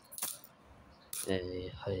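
Small metal rupee coins clinking as they are dropped by hand into a plastic bowl, a few sharp clicks in the first moments.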